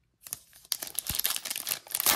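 Foil trading-card pack wrapper crinkling in the hands as it is gripped and torn open at the top. The crackle begins about a quarter second in and grows denser partway through.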